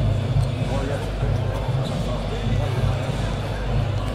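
Basketball arena during warmups: music with a heavy bass beat over the sound system, with crowd chatter underneath.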